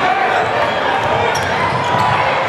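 A basketball being dribbled on a hardwood gym floor under the steady noise of a large crowd of talking and shouting spectators.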